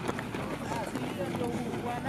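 Several men talking at once in a relaxed way, their overlapping voices rising about halfway in, over the soft footsteps of a group walking on a dirt track.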